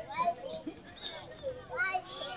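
Young voices calling and shouting across a football field, with a short shout near the start and another near the end.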